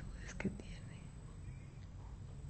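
A woman's soft, whispery voice trailing off within the first second, then quiet room tone with a low steady hum.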